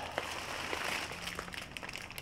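Faint rustling of plastic bags and packing being handled, with a few light clicks.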